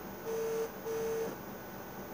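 Telephone ringback tone: two short steady beeps in a double-ring pattern, the sign that the called phone is ringing and the call has not yet been answered.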